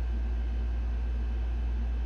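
Steady low background hum with a faint even hiss, with no distinct event.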